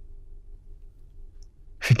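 A pause in an elderly man's speech, with only a faint steady low hum. He starts speaking again near the end with a single word.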